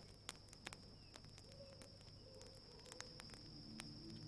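Faint outdoor night ambience: a steady high insect trill with scattered faint clicks. Soft music begins to fade in near the end.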